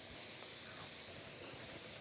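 Faint steady hiss of a skillet of white wine and lemon juice simmering down on the stove burner.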